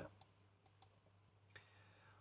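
Near silence with a few faint, short computer-mouse clicks spread across the pause.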